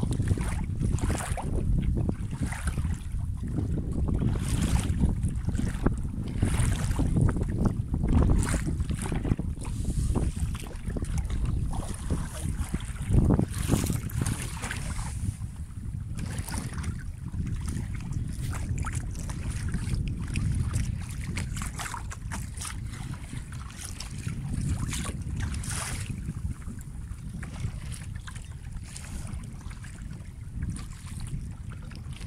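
Wind buffeting the phone's microphone in a steady low rumble, with irregular splashes and lapping of sea water around a paddled kayak.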